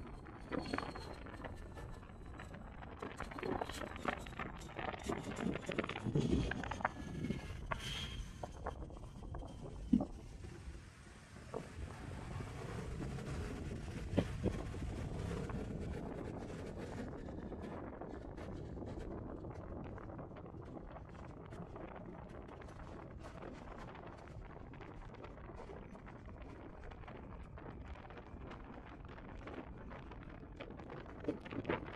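Wind rushing over the microphone of a camera on a moving motorcycle, with engine and road noise beneath it; choppy for the first several seconds, then steadier and a little fainter.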